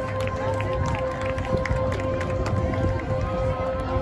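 High school marching band playing, a steady held note sounding over short drum hits and a low bass line. It is heard across the stadium, with spectators' voices close by.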